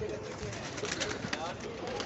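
Faint cooing of domestic pigeons from a loft full of birds.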